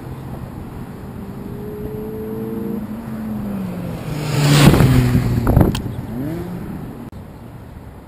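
A Mazda MX-5 Miata roadster driven hard through an autocross course: its engine revs up under acceleration, drops briefly, then the car passes close by loudly about four and a half seconds in. The engine note falls away as it leaves.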